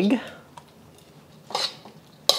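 Metal tongs scraping and clinking against a metal wok as a batch of fried rice noodles is tossed, one short clatter about one and a half seconds in.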